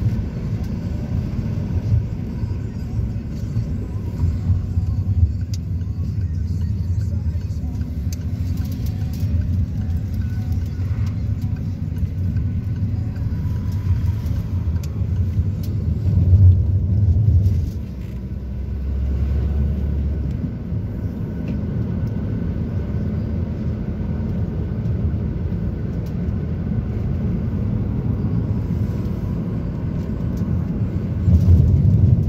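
Steady low rumble of engine and road noise heard from inside a moving vehicle. It swells briefly about sixteen seconds in, then drops to a lower, steadier hum for a couple of seconds before the rumble resumes.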